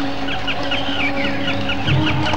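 A chorus of birds chirping quickly and continuously over a steady low hum, with a low thud near the end.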